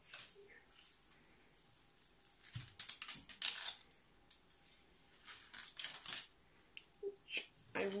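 A plastic mesh onion bag and a loose onion being handled on a kitchen worktop: a few short bursts of crinkling and rustling, the first starting a little before the halfway point.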